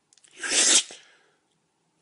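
A man sneezes once into the hand held over his mouth.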